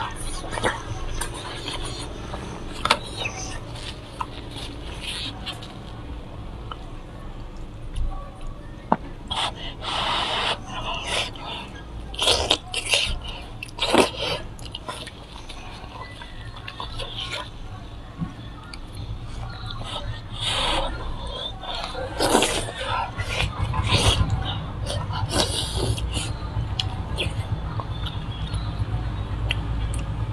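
Close-up wet chewing and lip smacking on sticky braised pork trotter: many short, irregular clicks and smacks over a steady low hum.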